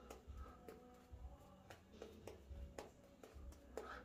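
Faint, soft strokes of a shaving brush working lather on the face, a few scattered swishes, over faint background pop music.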